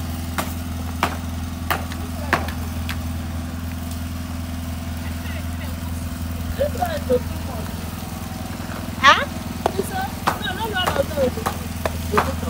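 A small engine running steadily in the background, a constant low hum. A metal ladle knocks against a large cooking pan as stew is stirred, a regular knock about every two-thirds of a second in the first few seconds.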